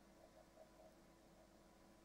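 Near silence: faint steady electrical hum and hiss of the recording.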